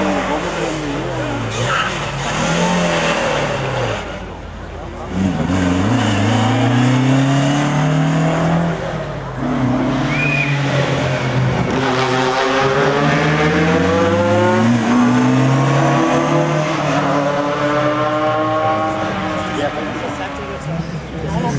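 Toyota Corolla Levin TE27 rally car's four-cylinder engine revving hard on a rally stage, its pitch climbing through each gear and dropping at every shift, over several passes.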